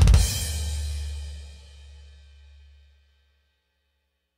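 Roland TD-30KV electronic drum kit struck in a final flurry of hits with a cymbal crash. The cymbal and a low bass tone ring out and fade away to silence about three seconds in.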